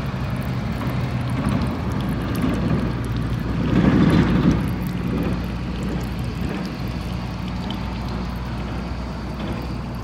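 Wood-Mizer LT40 band sawmill's engine running steadily at idle, with a brief louder rush of noise about four seconds in.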